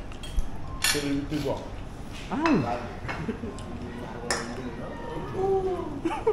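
Spoons and ceramic dishes clinking at a meal table, with two sharper clinks, one about a second in and one just past four seconds.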